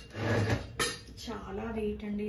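Heavy cast-iron pot and its lid knocking and clanking as it is lifted and handled, a cluster of hard knocks in the first second, the sharpest near the middle. A woman's voice follows near the end.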